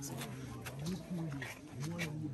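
A low-pitched voice talking continuously, with a few faint clicks.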